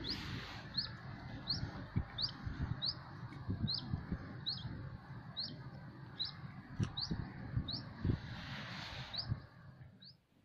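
A bird repeating a single short rising chirp, about three every two seconds, over a steady outdoor hiss with scattered low knocks.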